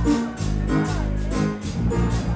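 Live band music: electric guitar and bass guitar over drums keeping a steady beat.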